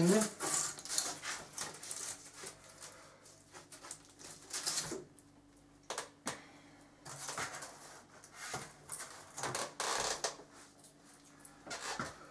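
Thin polycarbonate sheet discs being handled, rubbing and flexing with irregular rustles and a few sharp plastic clicks and knocks.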